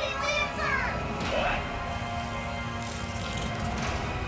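The animated episode's soundtrack: a character's voice speaking for about the first second and a half, with background music running underneath.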